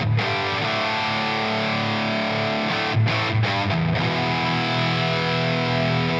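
Offset electric guitar played direct through the Valeton GP-200LT multi-effects processor, using a Mesa Boogie amp model and a Mesa 4x12 cab simulation. Distorted chords are struck and left to ring, with delay and plate reverb on them, and a few fresh chords come in around the middle.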